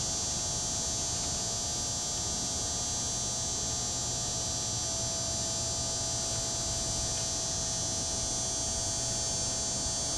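Steady electrical hum from a high-voltage outdoor light, unchanging throughout, with a high buzzing edge above it.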